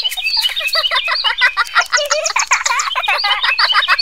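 Several small songbirds chirping and twittering rapidly, their quick overlapping calls running on without a break.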